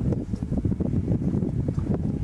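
Wind buffeting the microphone: a steady, fluttering low rumble.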